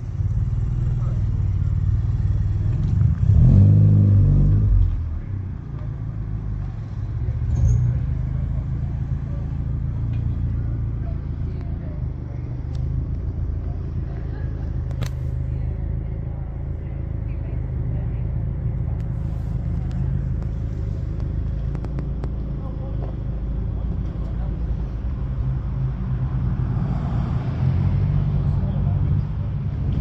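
Car engine revving as the car pulls away, loudest about three to five seconds in, over a steady low rumble of engines running and faint voices.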